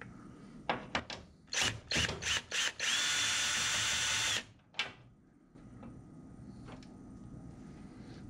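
Cordless drill spinning a socket on an extension to back out an 11/32-inch bolt: a few short trigger bursts, then a steady run of about a second and a half that stops suddenly. A single light click follows.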